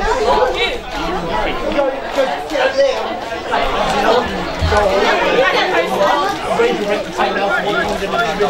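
Several people talking at once close by: overlapping, steady chatter of conversation, with no single voice standing out.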